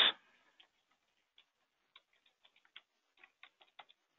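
Faint keystrokes on a computer keyboard: irregular light clicks, sparse at first and then coming quickly through the second half as a short line of text is typed.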